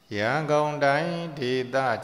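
Buddhist monk chanting close to the microphone in a slow, melodic intoning voice, each syllable drawn out on a held pitch; it starts suddenly right at the outset.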